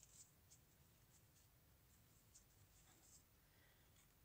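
Near silence with faint, scattered soft ticks and scratches of a crochet hook pulling cotton yarn through stitches.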